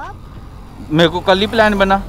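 A person speaking, from about a second in, over a steady low rumble of road traffic.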